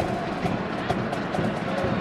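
Steady stadium crowd noise with music-like singing or playing faintly in the mix, as carried on a live soccer broadcast.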